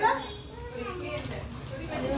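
Indistinct chatter of children's voices, loudest right at the start.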